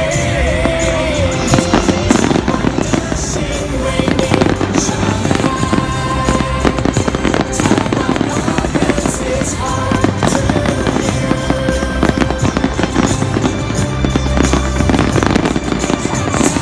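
Aerial fireworks going off in a dense, rapid barrage of bangs and crackles, with music playing underneath.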